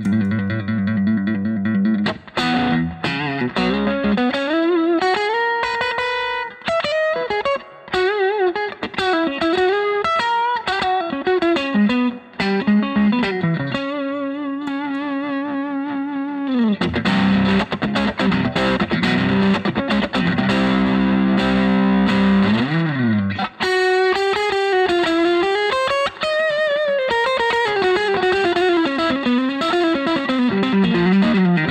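Fender Custom Shop '68 Stratocaster electric guitar played through an amp with the selector in position four, the middle and neck pickups together. It plays a continuous improvised lead with many string bends, then a held chord for several seconds past the middle that slides down in pitch, then more bent single-note lines.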